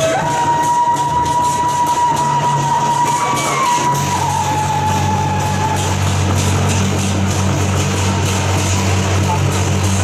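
Chinese traditional festival music for a lion dance: a wind instrument holds one long high note for about six seconds over a quick, steady run of percussion strokes. A low steady hum comes in about four seconds in.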